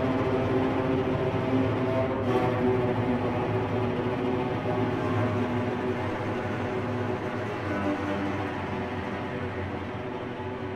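Chamber string orchestra, cellos among them, playing long held chords that grow gradually quieter over the last few seconds.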